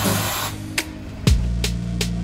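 Background music with a steady drum beat over a sustained bass line, opening with a short crash of noise.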